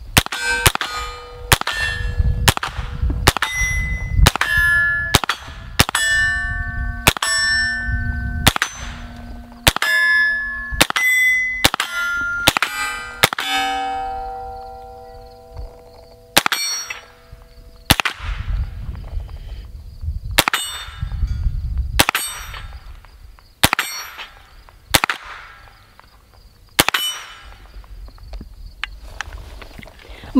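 Smith & Wesson M&P 15-22 semi-automatic .22 LR pistol firing a long string of shots, rapid for about the first thirteen seconds, then slower and spaced out. Many shots are followed by clear, sustained ringing tones, as of steel targets being hit and ringing out.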